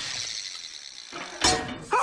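Tow-truck winch cable paying out with a whirring, ratchet-like mechanical sound, then a sudden loud crash about one and a half seconds in.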